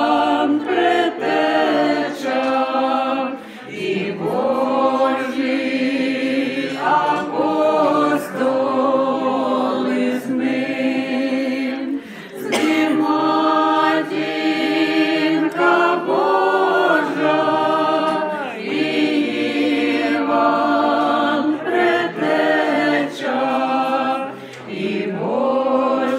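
Small mixed group of women's voices and one man's voice singing together a cappella, in long held phrases with short breaks, the clearest about 4 and 12 seconds in.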